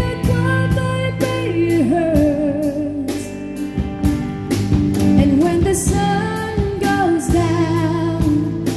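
Live band playing a pop ballad: a woman singing a gliding, drawn-out melody over electric guitar and a steady drum beat.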